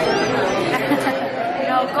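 Indistinct chatter of many diners in a busy café, with a short laugh near the end.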